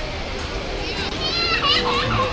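Children's voices over crowd chatter, with a child's high-pitched cry about a second and a half in.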